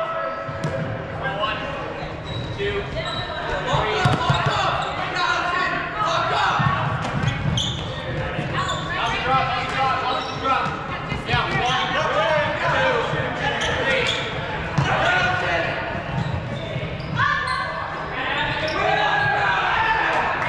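Players' voices calling out across an echoing gymnasium, over thuds of running footsteps on a hardwood court during a goaltimate point.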